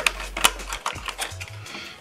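Small plastic gel polish bottles clicking and knocking together as a cardboard box of them is slid out of its sleeve and handled, with a few sharp clicks, the loudest about half a second in.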